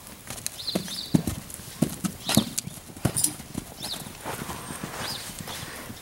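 Mustangs' hooves on a dirt corral as the horses move about: a run of irregular hoof thuds, with a few faint high chirps among them.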